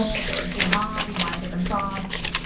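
Crinkling and rustling of printer paper as a folded, cut paper snowflake is pulled open by hand, a quick run of small crackles, with a voice murmuring briefly.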